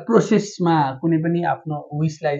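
A man speaking in Nepali.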